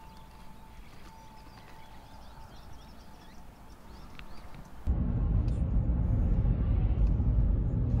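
Quiet rural outdoor ambience with faint bird chirps. About five seconds in it cuts abruptly to the loud low rumble of a car driving, engine and tyre noise heard from inside the cabin.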